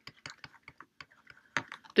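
A stylus tapping and scratching on a tablet while handwriting: an irregular run of small clicks, with a louder one about one and a half seconds in.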